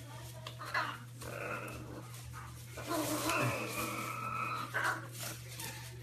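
A dog whining in thin, high-pitched whimpers: short ones about a second in, then a longer one from about three seconds in lasting over a second and a half.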